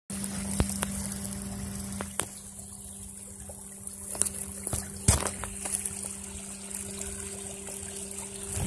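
Water trickling in a shallow muddy creek over a steady low hum, with a few sharp clicks.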